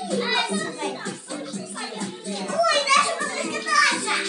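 Several young children chattering and calling out at once, over background music.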